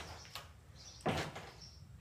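A faint tap, then a louder knock and rattle about a second in: a plywood-boarded window and its frame being grabbed and pulled on by someone climbing up.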